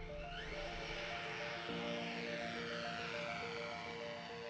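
Background music: a repeating pattern of short, steady notes over a soft swelling wash, with a lower held note coming in just under two seconds in.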